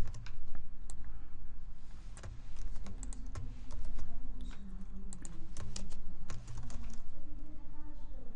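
Typing on a computer keyboard: a quick, irregular run of key clicks with short pauses between bursts.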